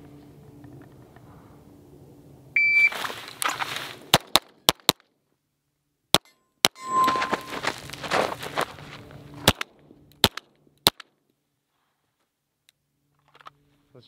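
Shot-timer start beep, then a string of rapid pistol shots from an Atlas Gunworks Athena Tactical 2011, fired in quick pairs and clusters with short pauses as the shooter moves between targets. A steel target rings once near the middle of the string.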